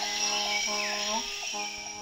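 A steady, high-pitched chorus of forest insects, with soft background music of held notes underneath.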